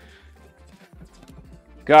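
Soft footsteps on a hard floor over faint background music, then a man's voice saying "got it" right at the end.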